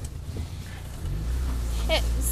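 Car engine running steadily with a low hum, which comes up about a second in.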